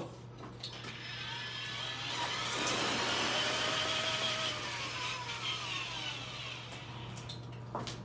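Electric drill running and spinning a painted canvas: a steady whir whose pitch climbs over the first few seconds and sinks again toward the end as the drill speeds up and slows down.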